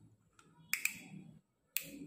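Plastic screw cap being twisted off a vinegar bottle by hand: two sharp clicks close together about three-quarters of a second in and another near the end, with faint handling noise between.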